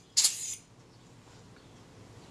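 A single short puff of air, under half a second, near the start, then faint room tone. It comes just as a stray thread of cotton is being cleared from the camera part.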